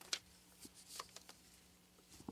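Faint room tone from the broadcast audio feed: a low steady hum with scattered small clicks and rustles, the sharpest click just after the start.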